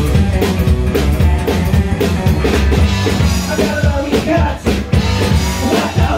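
Live psychobilly band playing loudly: electric guitar, upright bass and a driving drum kit, with some singing.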